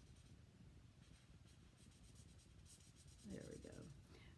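Faint scratching of a Stampin' Blend alcohol marker's fine tip being stroked across cardstock while colouring in. A short voiced murmur comes near the end.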